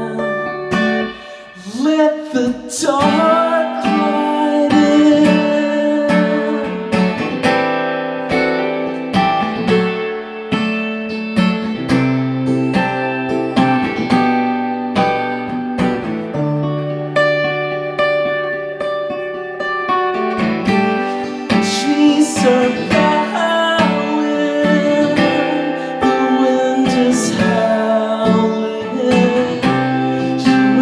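Acoustic guitar strummed in a slow rhythm with a man singing over it: a live solo voice-and-guitar performance.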